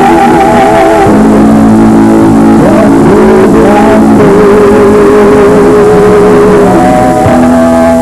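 A man and a woman singing a pop duet over a live band with guitar, holding long notes with vibrato.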